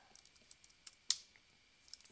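Faint computer keyboard keystrokes: a few light clicks, with one sharper keypress about a second in.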